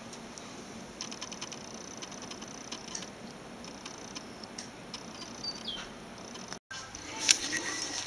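Faint handling noise: scattered light clicks and soft rustling. The sound drops out completely for a moment about two-thirds of the way in, and a sharper click follows shortly after.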